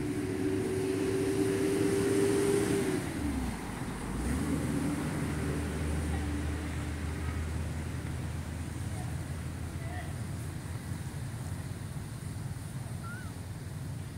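A motor vehicle passing by: its engine tone climbs slightly, then falls away about three seconds in, leaving a lower engine drone that slowly fades.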